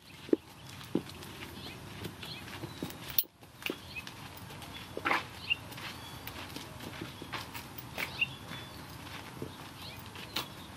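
A tied horse moving about on dirt, with scattered soft knocks and scuffs from its hooves and lead rope. Short high chirps come and go over a steady outdoor background.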